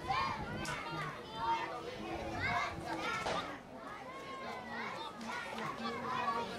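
Several children's and adults' voices shouting and calling out at once, in overlapping high-pitched calls with no pause.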